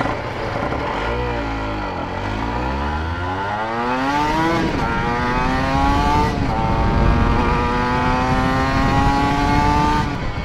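Honda NSR 125 two-stroke single-cylinder engine pulling away and accelerating through the gears: the engine note dips, then climbs, drops sharply at two upshifts, and climbs slowly again. Wind buffets the microphone, which has lost its foam windscreen.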